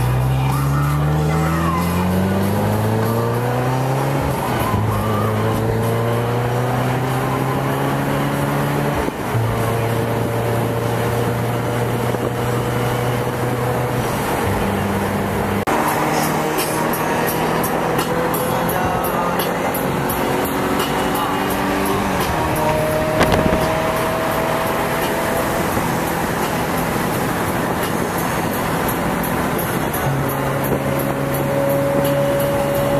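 A car's engine heard from inside the cabin, over road noise. It rises in pitch as the car accelerates for the first few seconds, drops at a gear change about four seconds in, then runs at steady cruising revs with a few more step changes in pitch.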